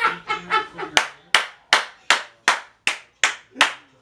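Hands clapping in a steady, even rhythm: about eight sharp claps, a little under three a second, starting about a second in.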